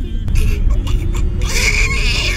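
Low road rumble inside a moving car, under a faint wavering melody. A breathy, hissing vocal noise starts about one and a half seconds in.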